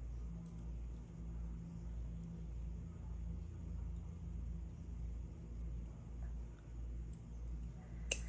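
Steady low hum of room tone, with a few faint small clicks from jewelry pliers closing a metal cord end onto flat leather cord.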